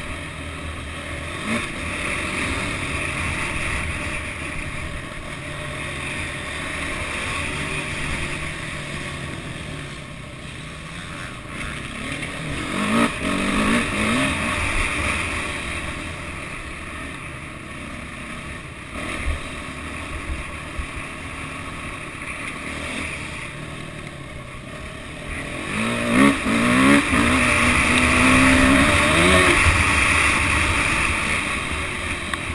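Motocross bike engine running and revving up and down as it is ridden round the dirt track, heard from onboard with heavy wind noise on the microphone. Hard revs rise about halfway through and again, loudest, near the end.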